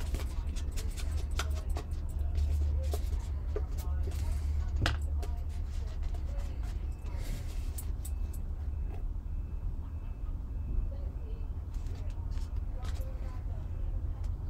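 Paper and card being handled on a craft table, with light rustles and many short clicks and taps as pieces are picked up and set down, over a steady low hum.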